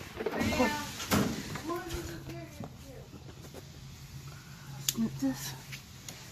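A woman says "yeah" and laughs, then a few sharp clicks and knocks with a faint low steady hum underneath.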